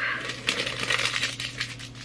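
Handling sounds as a book is fetched from a pile beside her: a quick run of light clicks, taps and rustles that thins out near the end.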